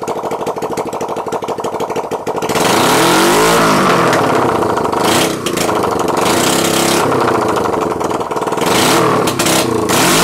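Honda CL350 parallel-twin engine running with its exhaust pipe off, firing straight out of the open exhaust port. It idles with a fast, even beat for about two and a half seconds, then is revved hard, the pitch climbing and falling several times.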